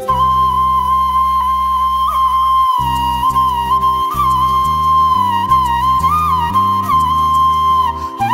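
Bamboo bansuri flute playing a slow melody of long held notes with small ornamental turns, over a recorded backing of sustained low chords and bass that begins to move about three seconds in.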